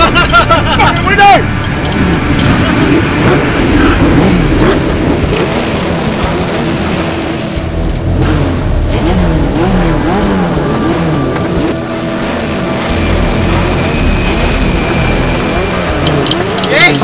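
Several motorcycle engines revving up and down over and over, overlapping, with a shout in the first second.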